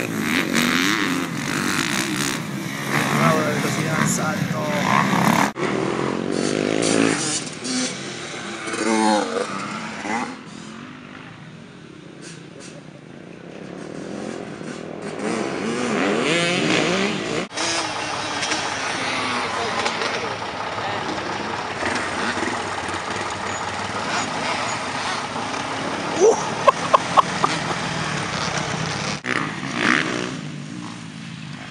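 Dirt bike engines on a motocross track, revving up and down as the riders accelerate and back off through the corners, in several clips joined with abrupt cuts. A quick run of four or five sharp ticks comes near the end.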